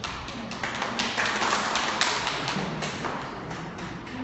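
A dense, overlapping flurry of taps and knocks from a group of people, building to its loudest about one to two seconds in, then thinning out.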